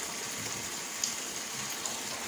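Chicken dopiaza curry cooking in a frying pan: a steady sizzling hiss, with a faint pop about a second in and another near the end.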